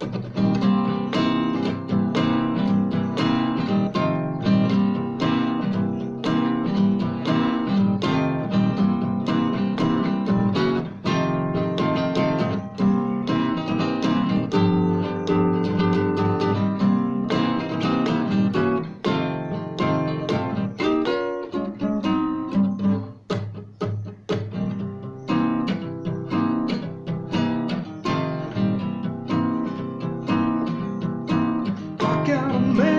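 Classical acoustic guitar strummed in fast, driving chords; the strumming thins out and drops in level for a few seconds a little past the middle before picking up again.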